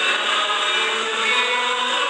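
A cantor singing a responsorial psalm with guitar accompaniment, heard through the church's sound system over a steady hiss, with notes held steadily.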